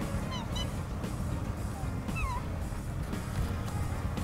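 Black swans calling in flight: a quick run of short, bugle-like honks about half a second in, then a single call that dips and rises in pitch a little after two seconds.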